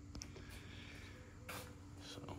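Quiet garage room tone: a faint, steady low hum, with a brief soft rustle about one and a half seconds in.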